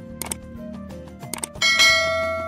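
Subscribe-button animation sound effects over background music: two short mouse-click sounds, then a bright notification-bell chime near the end that rings on. The chime is the loudest sound.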